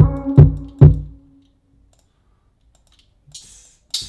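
A beat in progress playing back from FL Studio through Yamaha HS7 studio monitors: three loud low drum hits in quick succession over a held note, then playback stops about a second and a half in. Faint clicks follow near the end.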